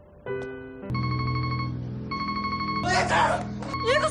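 A telephone ringing in repeated bursts of about a second, over a low, steady musical drone, with a voice breaking in near the end.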